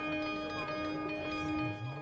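Frequency Factory Dreamcatcher granular synthesizer playing a steady pad of held tones, made from a four-second guitar-harmonics sample chopped into grains.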